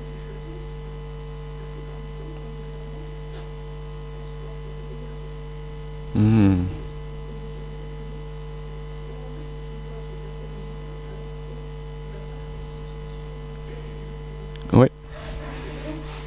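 Steady electrical mains hum with a buzzy set of overtones from the sound system. A short murmured voice sound comes about six seconds in, and a brief, louder voice sound comes near the end.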